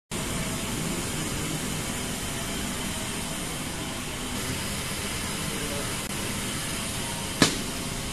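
Steady running noise from an automatic roller coating line for car rearview mirrors, its conveyor and rollers turning, with a single sharp click near the end.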